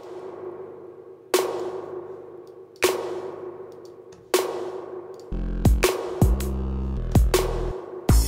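Snare drum hits about every second and a half, played through a tape-echo plugin's spring reverb with added tape noise, each hit trailing off in a hissy, decaying tail. About five seconds in, a fuller electronic drum pattern with a deep kick drum joins.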